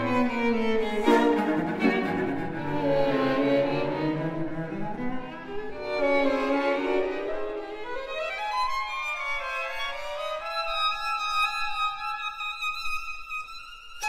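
String quartet of two violins, viola and cello playing bowed music. About halfway through the low part drops out, leaving high held notes that grow quieter toward the end.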